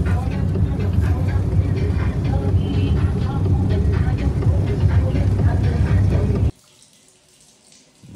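Fire truck engine and road noise heard inside the cab while driving: a loud, steady low rumble. It cuts off suddenly about six and a half seconds in, leaving quiet room tone.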